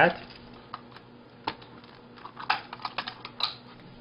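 Scattered light clicks and taps of plastic parts as a disposable camera's flash circuit board is worked loose from its plastic housing, sparse at first and more frequent in the second half.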